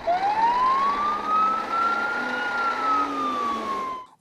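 Fire engine siren wailing: one slow rise in pitch over about two and a half seconds, then a slow fall. The truck's engine runs beneath it as it pulls out of the station on a call.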